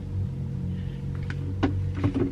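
Steady low hum inside a car cabin while a person drinks from a plastic water bottle, with a couple of small clicks and gulps a little past the middle.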